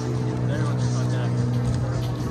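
Outdoor street ambience: a loud, steady low hum holding the same pitches throughout, with passersby's voices over it.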